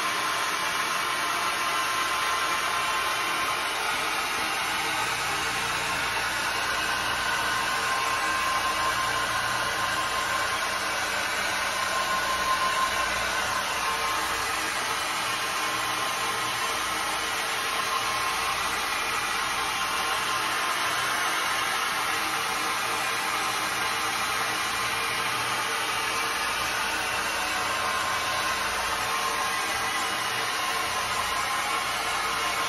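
Oreck orbital floor machine running steadily, its pad scrubbing wet tile and grout: a continuous motor hum and scrubbing noise with a faint steady whine.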